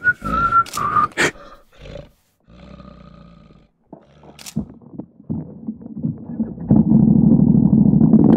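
A person whistles a short wavering note that stops about a second in. After a brief lull, a CFMOTO CForce ATV's engine runs and grows louder near the end as the quad gets going.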